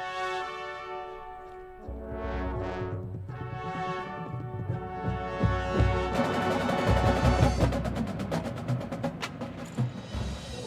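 Drum corps brass line holding sustained chords, joined about two seconds in by bass drums and low percussion. From about six seconds in the drums play rapid strokes and the whole ensemble builds louder.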